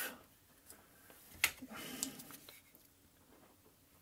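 Hands handling a laptop's removed optical drive and a hand magnifier. There is one sharp click about a second and a half in, then about a second of rubbing and rustling.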